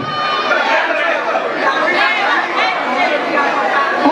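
Crowd chatter: many people talking over one another at once, no single voice standing out.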